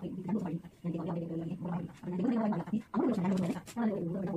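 A woman talking steadily in a small room, with only brief pauses between phrases.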